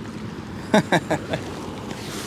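A man's brief laugh, about four short voiced pulses about a second in, over steady background noise of wind and water.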